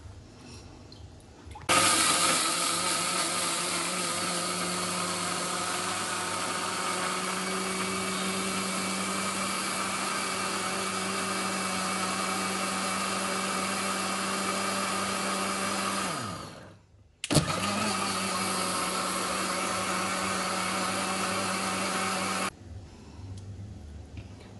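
Electric mixer-grinder (mixie) running as it grinds raw rice, sour curd, coconut and green chilli into a batter. It starts about two seconds in and runs steadily, then winds down with a falling pitch after about fourteen seconds. It starts again a second later and runs a few more seconds before stopping.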